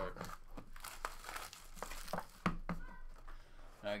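Wrapping crinkling and tearing as a sealed trading-card box is opened by hand, with a few sharp clicks of the cardboard being handled.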